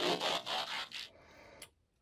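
A scratchy whoosh sound effect that starts suddenly, lasts about a second and fades, followed by one short click a little later.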